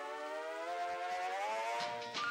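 Soundtrack effect: a sustained, siren-like tone that glides slowly upward in pitch, with steady music notes coming in near the end.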